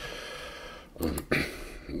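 A man breathing close into a microphone: a long breath out, then about a second in a short throat sound and a breath in, just before he speaks.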